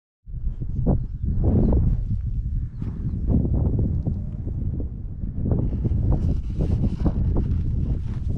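Wind noise on the microphone, a steady low rumble, with footsteps tramping through rough, tussocky moorland grass.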